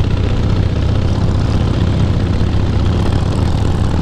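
Harley-Davidson Heritage Softail V-twin running steadily at cruising speed, a low drone under a steady rush of wind on the moving bike.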